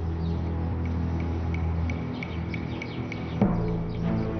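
Dramatic background score of sustained low notes, with a single struck, gong-like accent about three and a half seconds in.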